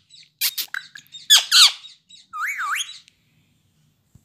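Indian ringneck parakeet making high squeaky chirps: a few short squeaks early, two quick arching chirps about a second and a half in, then a wavering, warbled call shortly before the three-second mark.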